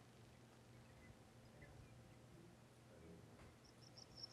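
Mostly near silence, then near the end a faint recorded Sprague's pipit song starts up: a run of high, thin, quickly repeated notes played through loudspeakers.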